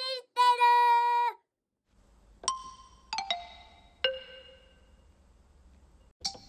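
A high, sing-song voice finishes the title call. After a short pause come a few struck, bell-like chime notes falling in pitch, the last and lowest ringing longest and fading, over a faint low hum.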